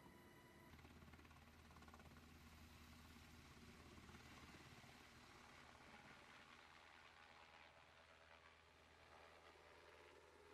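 Near silence: a very faint, steady rumble from a UH-60 Black Hawk helicopter flying overhead, starting less than a second in.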